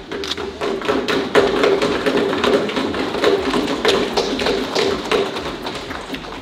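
Members thumping their hands on wooden desks in parliamentary applause: a dense, irregular patter of knocks. It swells about a second and a half in and tapers off near the end.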